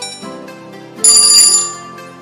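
A loud, high-pitched ringing alarm sound effect about a second in, lasting under a second, signalling that the quiz timer has run out; light background music plays under it.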